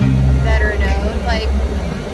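A song playing on the car stereo: a singing voice over a heavy bass line that steps from note to note.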